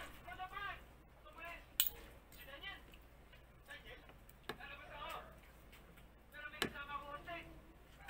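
A few sharp clinks of a utensil against a plate while eating, the loudest about two seconds in and near the end, with faint short voice-like sounds between them.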